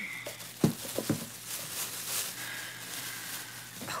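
Plastic shopping bag rustling and crinkling as items are pulled out of it, with a few light handling knocks, the loudest about half a second in.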